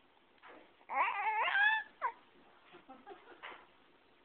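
A baby's high-pitched squeal lasting about a second, wavering in pitch, then a short falling squeak and a few soft babbling sounds.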